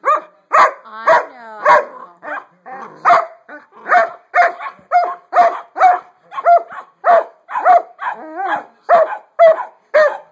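A dog barking at another dog in play, a quick string of short, sharp barks about two a second, a few of them rising and falling in pitch.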